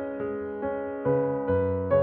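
Slow instrumental piano music: chords and notes struck about every half second, each left to ring and fade before the next.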